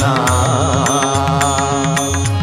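Kannada devotional song music: a held melodic note with a wavering, ornamented pitch over a steady low drone and light percussion, between sung lines.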